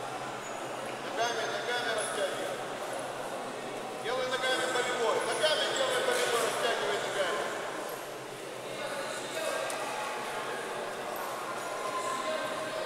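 Voices calling out, unclear and without words the recogniser could catch, over the background of a sports hall. The calls are loudest and overlap from about four to seven seconds in.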